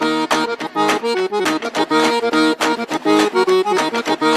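Instrumental break of a rock song: an accordion playing a repeating riff over a driving drum beat.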